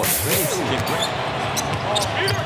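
A basketball being dribbled on a hardwood court, a few separate bounces over a steady background.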